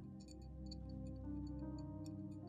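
Soft ambient background music with sustained held tones, and over it a run of small crisp irregular clicks, several a second, beginning just after the start.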